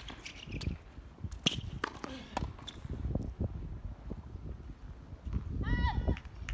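Tennis rally on a hard court: sharp racket-on-ball hits and ball bounces a second or so apart, with light footsteps between them. Near the end comes a short voice call.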